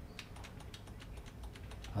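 Faint, rapid clicking of computer keyboard keys.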